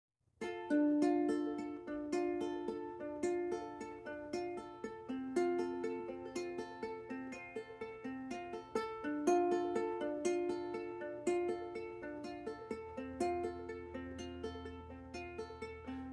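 Solo ukulele playing a picked, repeating pattern of single notes, the instrumental intro to a song, starting about half a second in.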